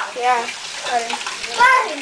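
Indistinct high-pitched voices talking, over a steady background hiss.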